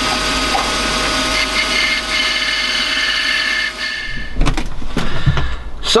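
Milling machine spindle driving a 5 mm M6 tapping drill through a metal bracket, fed gently, a steady motor whine with several tones. It cuts out about four seconds in, followed by a few knocks and clatters.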